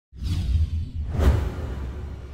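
Logo-intro sound effect: a whoosh sweeps through about a second in, over a deep bass swell that starts suddenly at the outset.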